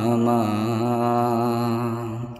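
A singer holds a long note on the word 'Ma' (mother) in a Bengali Islamic gojol, sung in a chant-like style. The note wavers in pitch and eases off near the end.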